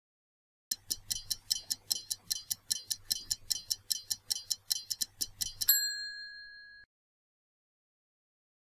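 Stopwatch ticking sound effect, a fast, even run of about four to five ticks a second for some five seconds, ending in a single bell ding that rings out for about a second: a countdown timer running out.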